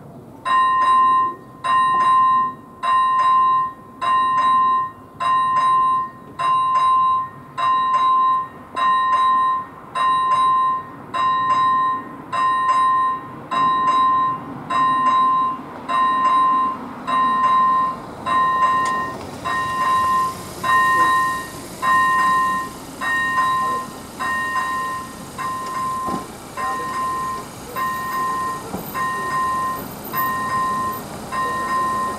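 Level-crossing warning bell (ZV-01 electronic bell on AŽD 97 signals) ringing as the crossing activates: a clear electronic ding repeating about once a second, starting about half a second in.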